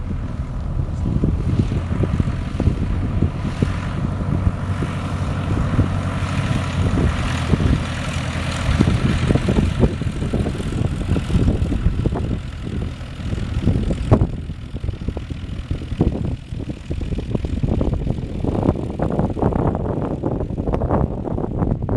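Single-engine Cub taildragger landing and rolling out, its engine and propeller running at low power. The sound grows louder as it rolls close by mid-way, then fades, with wind gusting on the microphone near the end.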